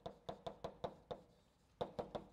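Chalk tapping and knocking against a blackboard as an equation is written: a quick, uneven run of sharp taps in the first second, a pause, then another tap near the end.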